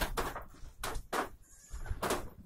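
Goats bleating in a shed: a few short calls in quick succession.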